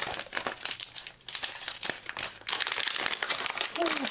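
Clear plastic packaging bag crinkling and crackling as it is handled and opened, with a dense run of irregular crackles.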